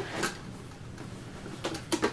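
Light knocks and clicks of a suitcase-style portable turntable's case being handled and tilted: one soft knock early, then two sharper clicks close together near the end.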